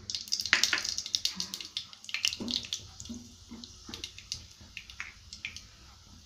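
Mustard seeds sizzling and crackling in hot oil in a pressure cooker, a high hiss full of sharp pops. The popping is thickest in the first two seconds and thins out after.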